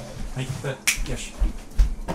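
Thumps and a sharp click about a second in, as a person gets up from a desk chair and moves away from the computer.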